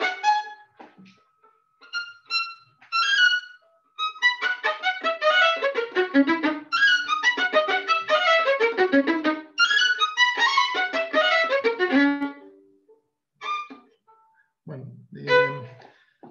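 Violin played in flying staccato: after a few separate notes, quick runs of many short, detached notes bounced off the string within single bow strokes, then a few last notes near the end.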